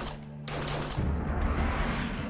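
A rapid volley of pistol shots about half a second in, over dramatic soundtrack music with a deep low rumble.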